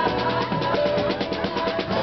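Live band music in which the drum kit plays a run of quick, even strokes, about eight a second, before the sustained notes of the full band come back in at the end.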